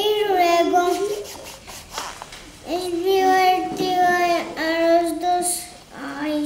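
A young child singing in three phrases with long held notes.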